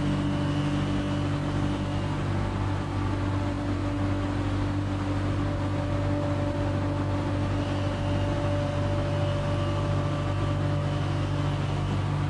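Steady machine hum with several constant low pitched tones, running evenly throughout.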